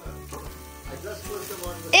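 Chicken sizzling on the grates of a gas grill, under background music with a steady bass beat.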